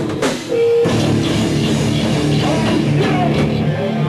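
Live heavy rock band playing loud, with distorted electric guitar and a drum kit. About half a second in the band drops out to a single held note, then comes crashing back in at full volume.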